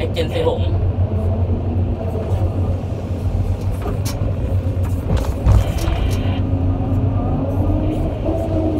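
Excavator diesel engine running steadily under load, heard from the cab, as the bucket swings over and drops a load of soil into a dump truck's bed, with a loud thump from the load landing about halfway through. A steady low whine joins near the end as the empty bucket swings back.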